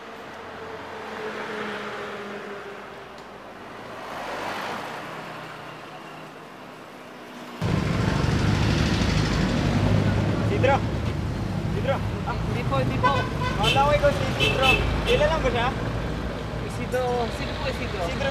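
Roadside traffic: vehicles passing on a street, the noise swelling and fading twice. About seven and a half seconds in, the sound jumps to a louder, steady traffic rumble with people's voices over it.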